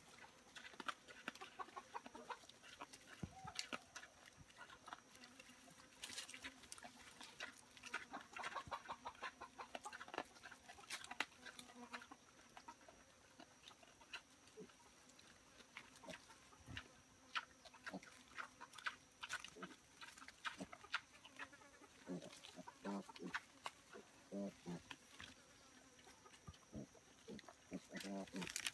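A sow and her newborn piglets grunting softly now and then, with scattered crackles and rustles in dry leaf litter as they root. Faint overall.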